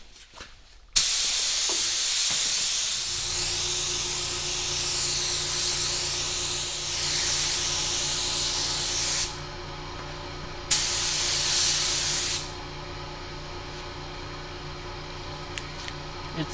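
Gravity-feed spray gun hissing as it sprays silver lacquer base coat: one long pass of about eight seconds, a pause, then a shorter burst of under two seconds. A steady low machine hum runs underneath from a few seconds in.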